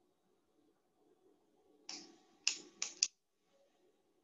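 Four quick taps on a computer keyboard in just over a second, the first with a short tail and the last two close together, over quiet room tone.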